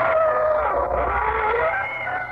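Radio sound-effect creaking door: one long, drawn-out hinge squeak whose pitch wavers and sags, the signature opening of the broadcast, heard on an old radio transcription recording.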